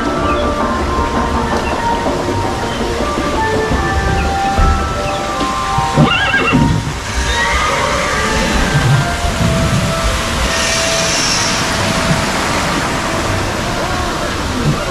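Music playing, with a recorded horse whinny about six seconds in. From about seven seconds, rushing water from a waterfall joins in.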